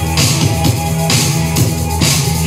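Rock music with a full drum kit keeping a steady beat over a sustained bass line, with bright cymbal hits about once a second.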